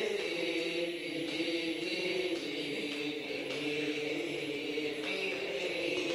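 A group of men chanting Arabic letter-syllables together in unison, every syllable on the "i" vowel (kasrah), a steady run of many voices.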